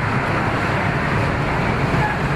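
Steady rush of wind and road noise on the open top deck of a moving double-decker tour bus, with wind blowing across the microphone.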